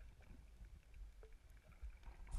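Near silence: a faint, muffled low rumble of water with a few soft ticks, recorded underwater.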